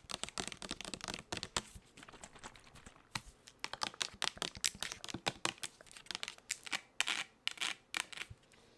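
Long acrylic fingernails tapping and scratching on a plastic Bath & Body Works foaming hand soap bottle: a dense run of quick, irregular clicks, a few of them louder.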